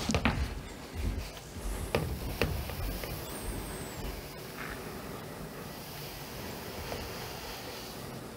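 Fine vermiculite poured from a plastic tub into a bucket of water, making a steady rushing noise as the granules fall in. In the first couple of seconds there are a few knocks as the plastic tub is lifted and handled.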